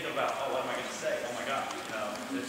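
A man speaking to a group.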